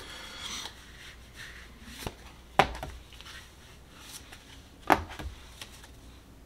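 Tarot cards being handled and dealt onto a wooden tabletop: a brief rustle of cards, then sharp taps as cards are set down, loudest about two and a half and five seconds in.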